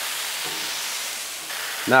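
Beef smash burger patties and fajita peppers and onions sizzling on a Blackstone flat-top griddle: a steady frying hiss.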